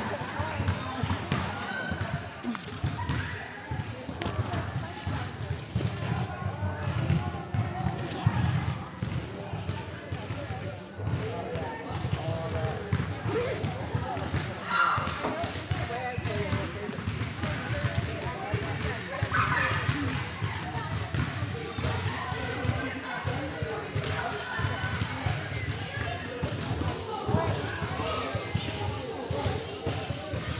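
Basketballs bouncing on a hardwood gym floor, many dribbles in quick succession, with people talking throughout.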